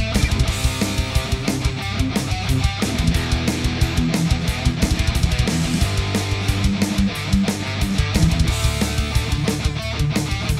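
Heavy metal full mix: distorted high-gain electric rhythm guitars through the BIAS Amp 2 Triple Treadplate amp simulator with Celestion Greenback speaker cabinets, over fast, driving drums and bass.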